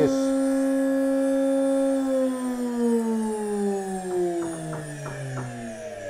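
Old electric starter motor spinning unloaded at full speed with a steady whine. About two seconds in the whine starts to fall steadily in pitch and fade as the motor coasts down.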